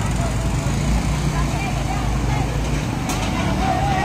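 Steady rush of floodwater flowing across a road, with a vehicle engine running low underneath and faint distant voices.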